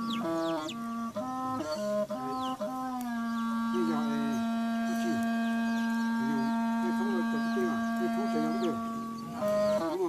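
A wind instrument sounds a steady reedy tone that steps between a few notes, then holds one long note. Chicks peep with short falling chirps throughout.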